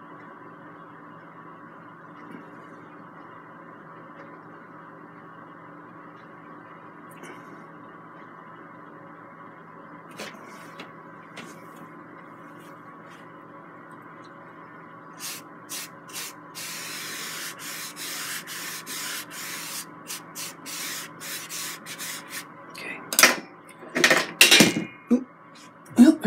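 A paintbrush scrubbing oil paint across a canvas in quick, repeated strokes, starting about halfway through after a stretch of steady low hum. Near the end come a few louder knocks and rustles.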